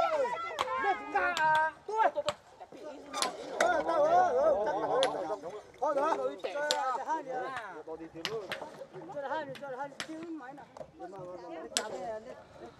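Several people's voices calling and talking over one another while a group shifts a wheeled concrete mixer over stony ground by hand, with scattered sharp knocks and clinks from the mixer, wooden planks and stones. The mixer's motor is not running.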